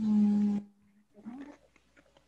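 A woman's voice holding a drawn-out hum on one steady pitch for about half a second, then a brief rising vocal sound about a second later.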